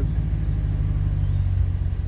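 Steady low rumble of a pickup truck's engine and tyres on the road, heard from inside the cab while driving.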